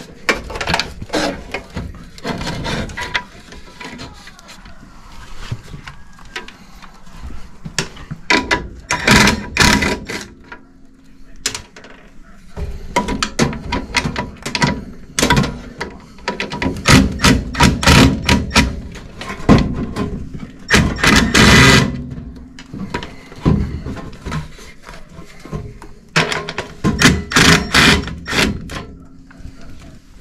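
Irregular knocks, clunks and clicks of metal parts as an inline draft inducer motor is unplugged and worked loose from a gas furnace's flue pipe. The handling is busiest in the middle, with a longer noisy stretch about two-thirds of the way through.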